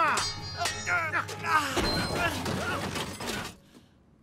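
A shouted cry, then a cartoon sound-effect crash about two seconds in as the robotic knight's metal armour breaks apart and its pieces clatter down, over background music. The clatter dies away shortly before the end.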